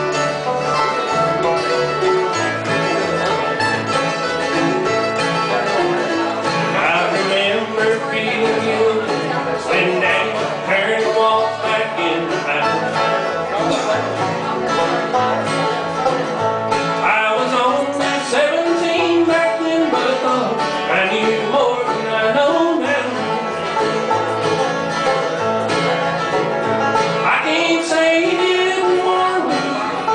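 Bluegrass band playing an instrumental passage, with banjo, mandolin and acoustic guitar picking together.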